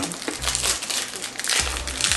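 Perfume packaging being handled and opened by hand: paper and cardboard crinkling and rustling in quick, irregular bursts.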